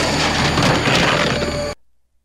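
Film soundtrack of a shootout: a loud crash with cracking and breaking debris over dramatic film score, cutting off suddenly near the end.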